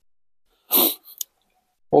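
A short, sharp breath drawn in by a man, then a small mouth click, between stretches of dead silence.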